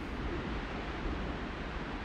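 Wind buffeting the microphone outdoors: a steady rushing noise, heaviest in the low end, with no tones in it.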